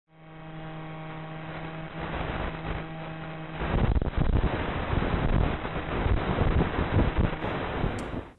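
Audio from a quadcopter's onboard recording, with no treble: a steady motor hum with its overtones, then, about three and a half seconds in, a louder rough rushing noise that fluctuates quickly and covers the hum.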